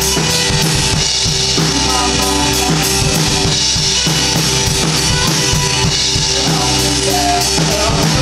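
Live rock band playing: distorted electric guitars over a drum kit keeping a steady beat of kick and snare hits.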